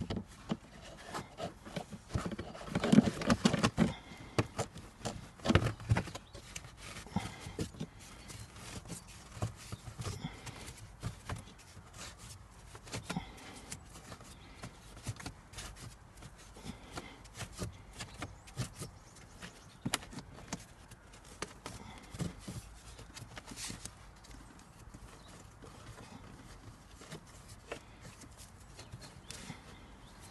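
Irregular clicks, taps and scraping as a cabin air filter is pushed and slid into its plastic housing. The handling is busiest and loudest in the first few seconds, then thins to scattered light taps.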